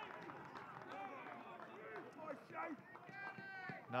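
Faint background voices of people at a ballpark talking and calling out, with one louder call about three seconds in.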